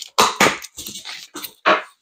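Cardboard box being cut open and its top flaps pulled apart: several short scraping and tearing noises, the loudest near the end.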